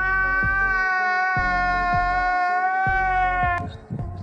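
A man's drawn-out crying wail from a comedy meme clip: one long held, high note that cuts off shortly before the end, over music with a low thumping beat.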